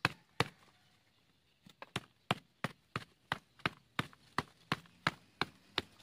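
A plastic bucket used as a plant pot being knocked on its side by hand: two knocks, a pause of about a second, then a steady run of about three knocks a second. The knocking is meant to loosen the hard, long-compacted potting media so the ficus root ball will slide out.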